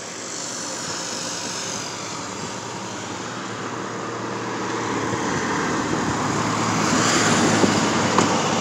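Road traffic noise, a steady rushing that grows louder toward the end as a vehicle approaches.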